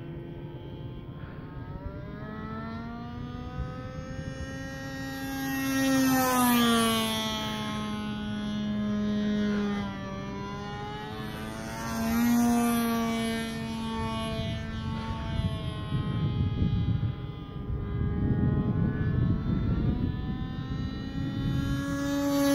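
Two-stroke nitro glow engine of a radio-controlled model airplane in flight, a buzzing whine that rises and falls in pitch, loudest about six and twelve seconds in.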